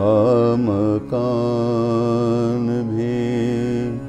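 A man's solo voice singing an Urdu Sufi devotional kalam: a wavering, ornamented phrase in the first second, then one long held note that stops at the end, over a steady drone.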